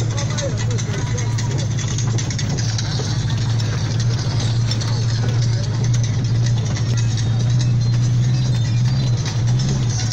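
Car engine and drivetrain droning steadily as heard inside the cabin while driving over a rough dirt road, with a voice and some music going on underneath.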